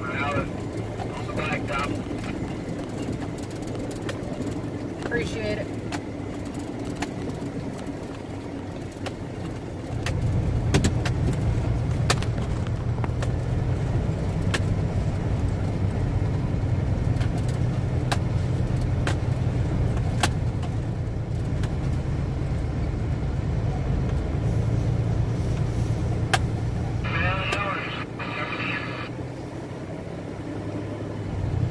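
Semi truck's diesel engine drone and road noise heard from inside the cab on a gravel road, with scattered sharp clicks and rattles. The engine drone gets louder about ten seconds in and stays up.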